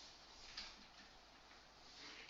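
Faint marker strokes on a whiteboard: a few short, scratchy squeaks as letters are written, the clearest about half a second in.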